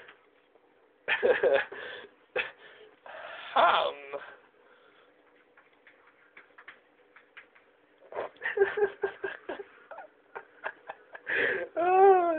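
A man laughing twice in the first few seconds, then a quieter stretch of small clicks and rustles over a faint steady hum, more short bursts of sound later, and a domestic cat's meow, falling in pitch, starting right at the end.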